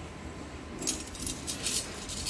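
A stack of metal bangles clinking and jangling against one another as they are handled, in a quick run of light clinks starting about a second in.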